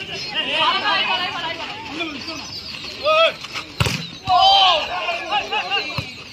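Shouting voices on a volleyball court, cut by one sharp smack of the ball being struck about four seconds in, followed at once by a loud shout.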